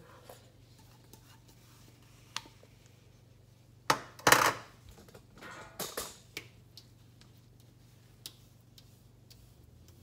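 A small bowl and utensils knocking and clattering on a glass stovetop: a sharp click about two seconds in, a loud clatter of knocks about four seconds in, then a few lighter knocks and clicks.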